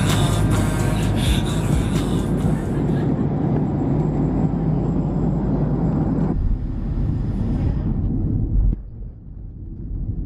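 Music with a beat fading out after about three seconds, giving way to the steady low rumble of an airliner cabin in flight. It drops to a quieter hum near the end.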